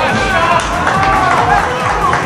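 Several voices shouting and cheering on the football pitch as a goal goes in. The yells break out suddenly and overlap.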